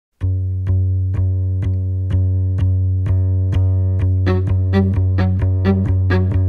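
Instrumental chamber music: a low held cello note under a sharp percussive tick about twice a second, with a higher instrument entering about four seconds in playing a short repeated figure.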